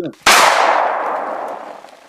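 A single sudden crash-like hit about a quarter second in, fading away over about a second and a half: an editing sound effect over the closing like-button graphic.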